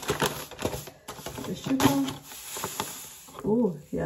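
Sugar pouring from a paper bag into a saucer: a soft, grainy hiss with a few crisp rustles of the paper bag.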